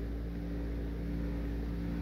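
A steady low hum made of several fixed low tones, with no change and no sudden sounds.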